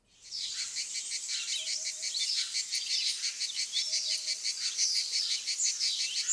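Many small birds chirping and twittering in a dense, continuous chorus of rapid high notes, with a few quick sweeping calls. The chorus cuts in abruptly.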